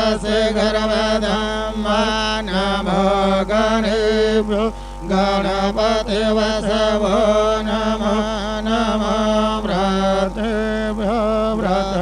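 A man chanting Sanskrit puja mantras in a continuous, sing-song recitation with short pauses for breath, over a steady hum.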